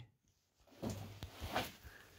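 Faint handling noise: a short run of soft knocks, rustles and a couple of light clicks starting about a second in, from the opened metal equipment box or the camera being moved.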